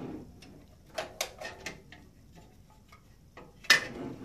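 Light clicks and taps of a Ubiquiti airFiber 24HD radio's plastic housing being handled and tilted, scattered through the first half, with one louder knock near the end.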